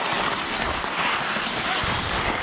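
Steady hiss of hockey skates scraping and carving the ice as several players skate near the net.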